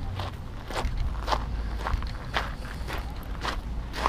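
Footsteps crunching on a gravel and pebble riverbank, about two steps a second, over a steady low rumble.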